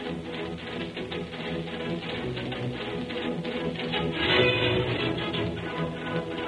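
Orchestral music with a quick, steady rhythm, from an old radio broadcast recording.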